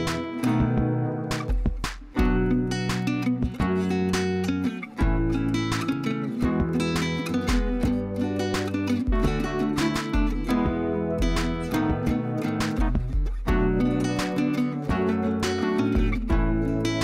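Background music: a strummed acoustic guitar over a bass line, at a steady tempo.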